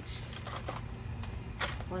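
Plastic potting-soil bag rustling and crinkling as a hand reaches in and scoops soil, in several short bursts over a steady low hum.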